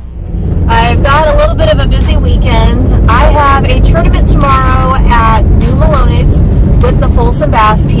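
A woman talking inside a moving car, over the steady low rumble of road and engine noise in the cabin.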